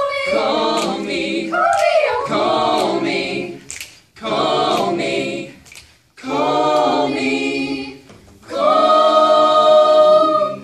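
Amateur mixed choir singing a cappella in short phrases separated by brief pauses, then holding one long chord near the end.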